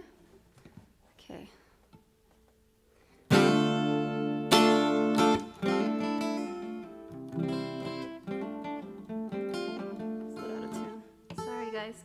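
Acoustic guitar strummed and tried out before a song: a loud chord about three seconds in, another a second later, then lighter strummed chords and picked notes.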